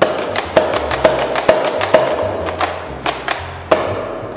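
Spring-powered Nerf Rival Kronos blaster, fitted with a 13 kg spring, fired in rapid succession: a run of sharp snaps at about two a second, with one more after a short pause near the end. Background music plays underneath.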